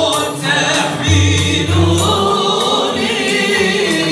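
Moroccan Andalusian al-Ala music played live: several male voices singing a wavering, ornamented melody together over violins held upright on the knee.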